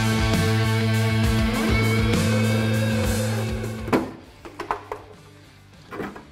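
Guitar-driven rock backing music, which fades out a little over halfway through. A sharp knock follows, then a few lighter clicks.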